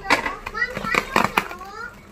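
A child's voice, with sharp crackling and tearing of plastic wrap and packing tape on a cardboard parcel being opened.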